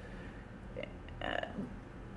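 A pause in speech with a steady low room hum and a brief, soft throat sound from a person about a second and a quarter in.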